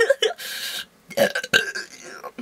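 A woman's goofy non-speech vocal noises: a short breathy hiss, then about a second in a brief throaty, burp-like sound.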